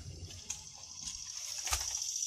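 Quiet handling noise with two light clicks as a long soft tape measure is pulled out and stretched between the hands, over a steady faint high hiss.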